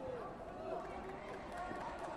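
Background chatter of many indistinct voices talking and calling out across a large sports hall.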